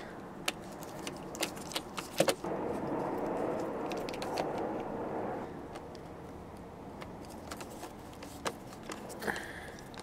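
Screwdriver backing out the sun visor's mounting screws in a car headliner: many small, irregular metallic clicks and scrapes. A louder stretch of rubbing noise runs from about two and a half to five and a half seconds in.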